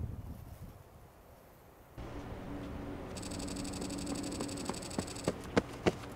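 Very quiet at first, then from about two seconds in a steady low buzzing hum, with a few sharp clicks near the end.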